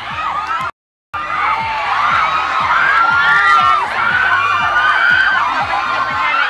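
A crowd of students cheering and shrieking, many voices overlapping. The sound cuts out briefly just under a second in, then comes back louder.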